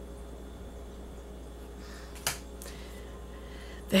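Quiet room tone with a faint steady hum, broken a little over two seconds in by a sharp click and a fainter one just after, as a small matte playing-card-sized tarot card is pulled from the deck.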